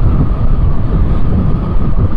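Motorcycle riding at a steady road speed: loud, steady rumble of wind buffeting the microphone mixed with the bike's engine and tyre noise.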